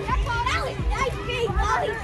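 Several children's voices calling out excitedly over one another.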